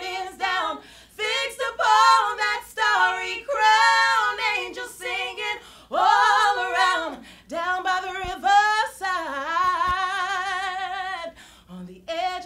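Two women singing a cappella in a soul style, with no instruments, in sung phrases broken by short breaths. Near the end comes one long held note with vibrato.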